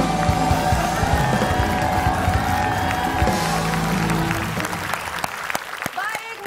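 Upbeat TV show theme music with drums and guitar over the show's title card. It fades out about four and a half seconds in as studio audience applause takes over.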